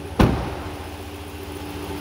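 A truck door shutting with one loud thump about a quarter second in, over the steady idle of the 2021 Ram 1500's 5.7-litre Hemi V8 engine.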